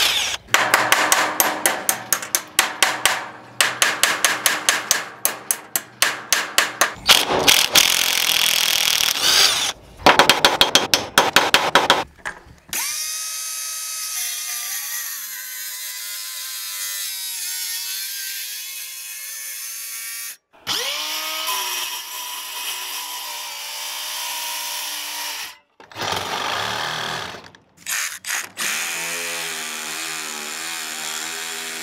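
A cordless 20V impact wrench hammering on a bolt in short rapid bursts. About twelve seconds in, an angle grinder takes over, running steadily as it grinds rusty steel to prep the metal, and it stops and restarts a few times.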